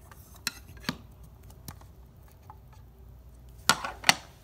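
Clear hard plastic card case being handled: a few light clicks, then a loud sharp knock near the end as it is set on the wooden table.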